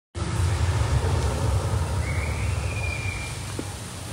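Steady rush of an indoor water curtain pouring down from a ceiling ring, with a low rumble beneath it. A faint high tone rises for about a second near the middle.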